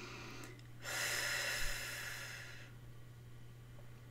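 A woman taking one long, audible breath through the nose or mouth, an airy hiss lasting about two seconds that starts about a second in.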